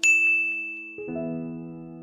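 A bright chime ding that rings out and fades over about a second, the pop-up sound effect of an animated 'like' button, over sustained electronic keyboard chords; a new chord comes in about a second in.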